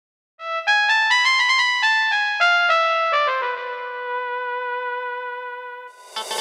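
Solo keyboard melody opening a karaoke backing track: a quick run of single notes, then one lower note held and fading away.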